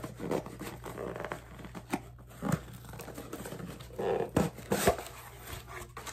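A mug being unwrapped from its mailing package: rustling, tearing and crinkling of the wrapping with scattered clicks and knocks. It is loudest about two seconds in and again between four and five seconds.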